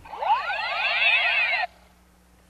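Electronic warbling tone from a handheld speed gun taking a speed reading: many overlapping tones gliding up and down at once, cutting off suddenly about a second and a half in.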